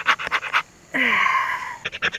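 Knife blade sawing into a tin can's steel lid in rapid scraping strokes, about ten a second, to cut it open without a can opener. The strokes break off about a second in for a strained, breathy exhale lasting about a second, then resume near the end.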